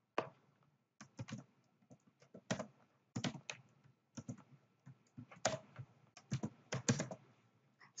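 Typing on a computer keyboard: an irregular run of key clicks, one to several a second, with short pauses between them.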